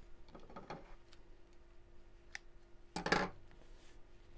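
Soft rustle of gathered cotton fabric being handled. About three seconds in comes a brief metallic clatter of dressmaking scissors on a wooden tabletop.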